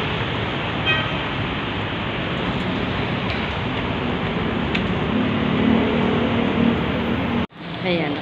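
Steady outdoor noise of nearby road traffic, a continuous rumble and hiss with no distinct events; it cuts off abruptly near the end.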